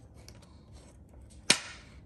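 A single sharp tap about one and a half seconds in, made while glued paper pieces are pressed down firmly by hand on a craft cutting mat. Otherwise only faint handling.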